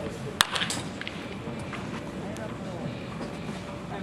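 A single sharp crack of a baseball bat hitting a pitched ball in a batting cage about half a second in, followed by a few fainter clicks, over murmured voices.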